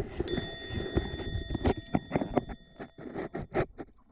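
A bell-like chime rings once, about a quarter second in, and fades away over about three seconds, over a background of water noise with a run of sharp clicks.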